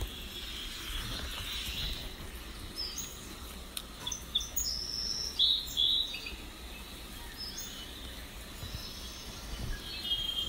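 Birds chirping: short high calls come in scattered bursts, busiest and loudest in the middle, over a steady background hiss.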